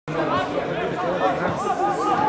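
Several people's voices talking and calling over one another in a continuous jumble of chatter.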